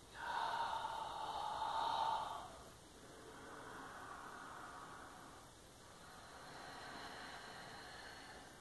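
A woman breathing slowly and audibly while holding a yoga pose: a louder breath over the first couple of seconds, then two softer, longer breaths.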